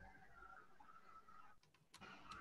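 Near silence: faint background noise on a video-call line, with a few faint clicks near the end.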